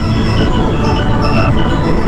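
Windows 2000 startup sound in a 'G-Major' edit: the chime is layered with copies of itself pitch-shifted as far as four octaves down and slightly detuned. The result is a loud, dense low rumble under a scatter of short high notes.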